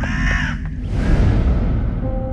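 A crow cawing, then a deep low boom about a second in that slowly fades away.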